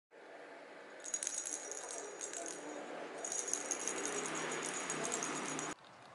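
A hollow plastic lattice cat-toy ball with a rattle inside, shaken in two jingling spells with a short pause between them, stopping abruptly near the end.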